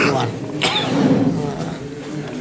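Speech: a man talking, with a short pause in the middle.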